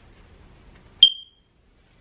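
A single short, high-pitched electronic beep about a second in, ringing briefly before it dies away.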